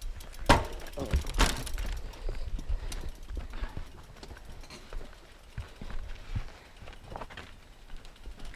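Mountain bike clattering down a rocky trail: two loud knocks about half a second and a second and a half in as the wheels hit rocks, then irregular rattling and small knocks of tyres and frame over rock and dirt.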